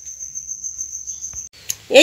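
A cricket trilling steadily on one high pitch, cut off abruptly about a second and a half in.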